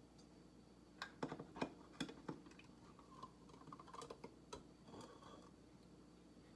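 A metal spoon clicking and knocking against a plastic cup as a dyed egg is scooped out of the dye: a few sharp clicks between about one and two and a half seconds in, then softer clinks.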